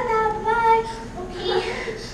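A boy singing a few held notes, then a couple of spoken or half-sung syllables.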